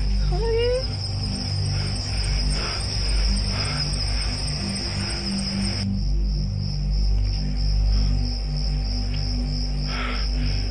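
Crickets trilling steadily at night over a low, droning music bed. About halfway through, the trill breaks into a regular pulsing chirp.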